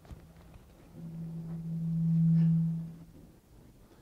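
Low feedback howl from a lapel microphone through the room's PA: one steady low tone that swells for about two seconds and then fades away.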